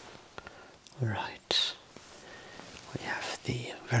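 Soft whispered speech in two short phrases, with a few faint clicks before the first.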